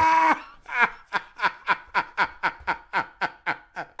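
A man laughing in a long, even run of short breathy "heh" sounds, about five a second.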